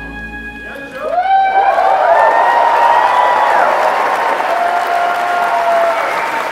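A live band's final held note with bowed cello fades. About a second in, a concert audience breaks into loud applause and cheering with long whoops.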